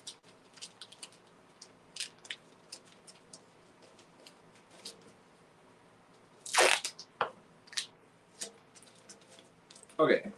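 Masking tape being worked around a motorcycle fuel tank's petcock: scattered short crackles and clicks as the tape is pressed and wrapped on. About two-thirds of the way through comes one loud rip as a strip is pulled off the roll.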